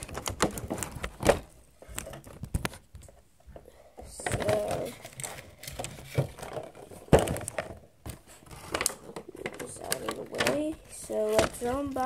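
A boxed DVD set being handled and opened: scattered sharp clicks and taps with some crinkling of packaging. A child's voice mumbles quietly about four seconds in and again near the end.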